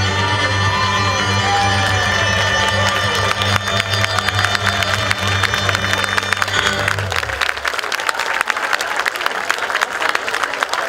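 Live Latvian folk dance music with a steady low drone under it, ending about seven seconds in, then the crowd applauding and cheering.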